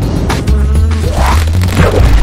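Channel outro jingle: music with a steady bass line, overlaid with a buzzing, insect-like sound effect.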